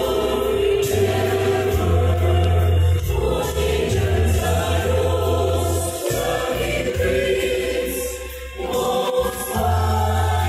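Choral music: a group of voices singing over a steady bass line, with a brief drop in the bass about six and nine seconds in.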